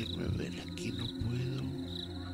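High, pulsed chirps like a cricket's, repeating about once a second over a low, steady musical drone.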